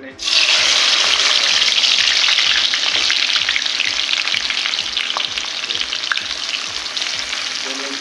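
Chopped onions dropped into hot ghee in a karahi, frying with a loud sizzle that starts suddenly and eases slightly as it goes on.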